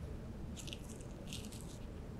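Rock salt crumbled between fingers and sprinkled into a glass of water: two faint, short, crunchy rustles, about half a second and a second and a half in.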